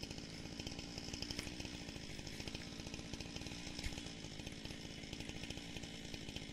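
Gasoline chainsaw running steadily at an even speed, with one short knock about four seconds in.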